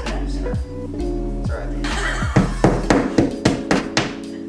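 Background music plays throughout. From a little past halfway, a hammer raps against the wall in a quick run of about eight blows.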